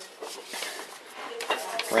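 Faint rustling and a few light clicks, handling noise while working over the freshly cut PVC pipe.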